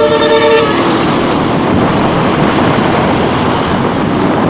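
A vehicle horn blares as one steady note for the first half-second or so. After that come the steady wind and road noise of a Honda TMX155 motorcycle riding through traffic.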